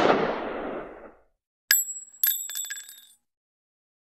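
The tail of a loud hit dies away over the first second. After a short gap comes a sharp metallic ring, then a quick cluster of metallic clicks that ring on for about a second before stopping.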